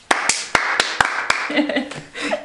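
Hand claps, about six sharp claps at an uneven pace, mixed with laughter.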